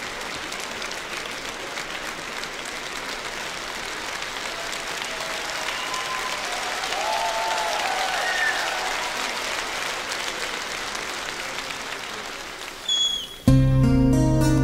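A concert-hall audience applauding steadily, with a few voices calling out. About half a second before the end, the band starts the next song suddenly and loudly, led by guitar.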